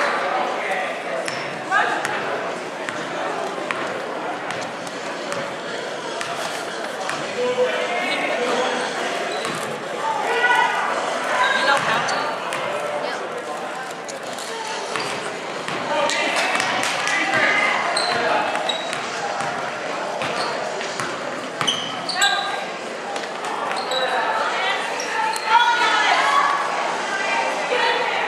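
A basketball game in a gym: the ball bouncing repeatedly on the hardwood court amid scattered sharp knocks, with players and spectators calling out in the echoing hall.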